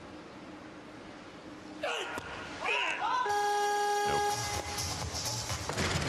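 Competition weightlifting jerk: voices shout about two seconds in, then a horn-like buzzer, the referees' down signal, sounds for about a second. From about four seconds in, loud crowd noise follows as the barbell is dropped to the platform.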